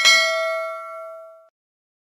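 A single bell-ding sound effect, the chime for clicking a notification bell icon, struck once and ringing out as it fades over about a second and a half.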